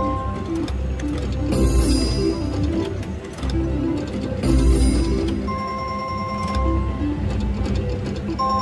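Video slot machine playing its electronic reel-spin music, a stepping run of short tones while the reels spin, with two louder noisy bursts and a held tone near the end.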